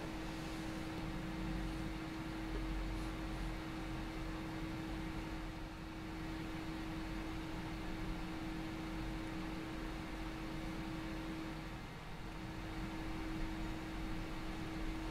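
Steady room background: a low hum with one constant tone and a soft hiss, with no distinct events.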